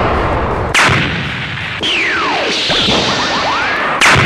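Cartoon battle sound effects over a steady noisy background: a sudden hit under a second in, then a whistle falling steeply in pitch, a few short glides, and a whistle rising in pitch near the end.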